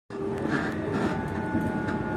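Steady running noise of a passenger train heard from inside the carriage while it is moving: a low rumble with a faint steady tone above it.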